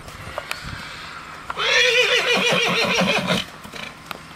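A horse whinnying: one long call of about two seconds, starting about one and a half seconds in, its pitch quavering rapidly and dropping at the end. A few faint knocks come before it.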